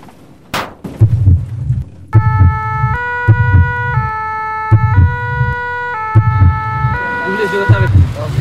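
A sharp hit about half a second in, then a heartbeat thumping about once a second, joined about two seconds in by a French two-tone emergency siren stepping between its two pitches about once a second.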